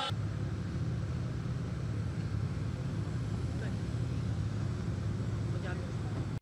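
A steady low rumble of idling vehicles with crowd voices over it, the ambient sound of a motorcade arrival among a large crowd.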